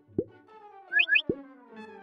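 Cartoon sound effects over soft background music: two short rising plops, one near the start and one just past the middle, with a quick high double squeak between them. They go with two little orange balls popping onto the scene.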